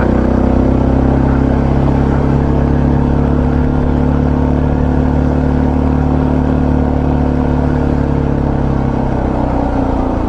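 Motorcycle engine pulling steadily under load up a steep hill, its note rising slightly and then easing off toward the end.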